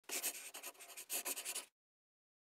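Dry scratching in two quick runs of short strokes, about a second and half a second long, cutting off abruptly near the end.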